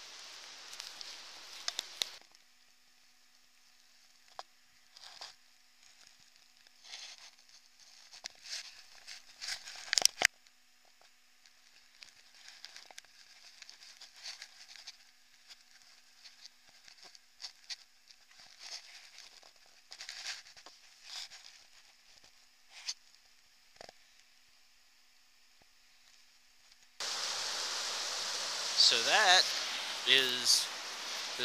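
Footsteps crunching through dry fallen leaves on a forest trail, faint and intermittent, with one sharp click about ten seconds in. Near the end a loud, steady rush of creek water comes in suddenly, with a man's voice over it.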